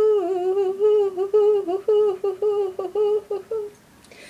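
A woman humming: a held note that breaks into a quick run of short repeated notes at about the same pitch, about three or four a second, then stops shortly before the end.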